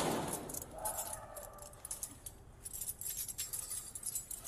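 Metal keys jingling on a corrections officer's duty belt as he moves, picked up by his body camera as quick, irregular clinks. A short louder burst of noise opens it.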